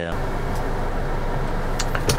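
Steady rushing noise inside a car cabin with its air conditioning running, with two faint clicks near the end.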